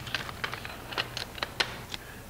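A Steyr AUG rifle fitted with a suppressor being handled and turned over: a quick, irregular run of light clicks and knocks from its parts.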